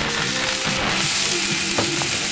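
Food frying in a pan on a galley stove: a steady, crackling sizzle.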